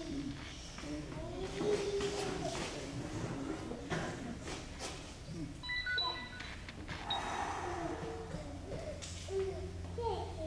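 Low murmur of audience voices, children among them, in a hall. About six seconds in, a drinking glass clinks briefly with a few short ringing tones as it is handled under a concrete slab.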